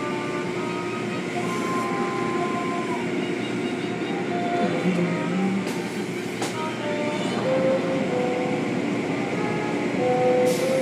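Automatic car wash heard from inside the car: a steady rush of water spray with foam and hanging cloth strips sweeping over the body and windshield, over a constant machinery rumble. A couple of sharp ticks come about six seconds in.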